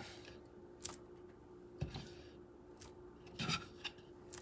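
Faint scraping and a few light taps as mashed garlic is scooped out of a wooden pilón (mortar) and dropped onto raw steak in a stainless steel bowl.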